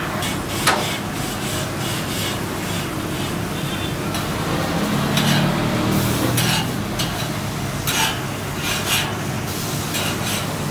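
Beef patties and a griddle of mushrooms sizzling steadily on a commercial gas grill, with a metal spatula scraping and clinking against the grill grates a few times.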